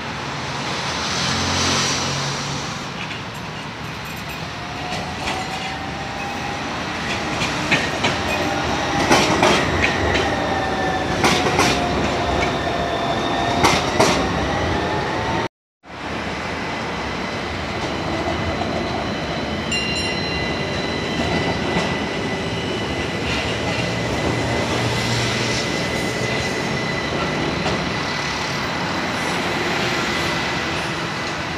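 Athens tram running over track points: wheels squealing in a few wavering tones, with sharp clicks and knocks as the wheels cross the switches. After a brief dropout about halfway, a tram passes close by with a steady high whine over its running noise.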